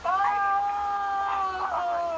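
A young man's long, high scream, held steady for nearly two seconds and dropping in pitch at the end, played back through a tablet's speaker.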